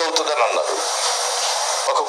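Telugu speech with a steady hiss underneath; the voice sounds thin, with no low end, and breaks off into a stretch of hiss in the middle before speech resumes near the end.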